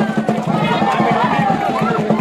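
Fast, even drumbeat, several beats a second, with crowd voices and shouts over it.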